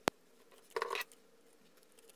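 Scissors snipping through felt: a sharp click right at the start, then a short snip about three quarters of a second in.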